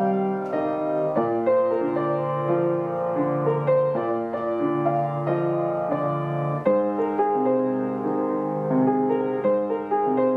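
Upright piano played with both hands: chords in the left hand under a single-note melody picked out by the right.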